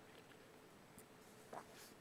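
Near silence: room tone, with a faint brief rustle of paper sheets about a second and a half in.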